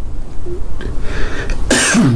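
A man coughs once near the end: a short, sharp cough after a quiet pause.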